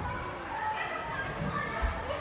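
Indistinct chatter of young gymnasts in a training hall, with a single low thud near the end.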